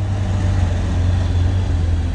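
Four-wheel-drive pickup truck engine running with a steady low drone as it climbs a steep muddy dirt track.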